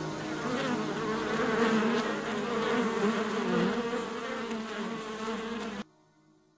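A buzzing, insect-like drone with a wavering pitch forms the closing outro of the track. It cuts off suddenly near the end.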